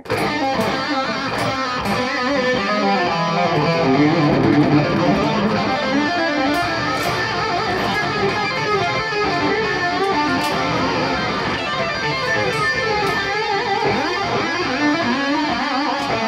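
Japanese-made Jackson Soloist electric guitar with twin Jackson JADC humbuckers, played continuously as a stretch of picked riffs and lead lines without a pause.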